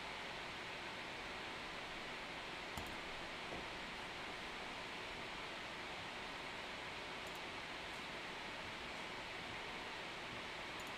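Steady hiss of room noise, with a couple of faint clicks about three seconds in.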